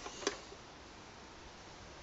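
Quiet room tone: a faint steady hiss with one brief click about a quarter of a second in.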